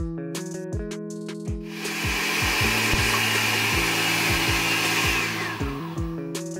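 Countertop blender running for about three and a half seconds from about two seconds in, blending a smoothie, then spinning down near the end with a slight drop in pitch. Background music with a steady beat plays throughout.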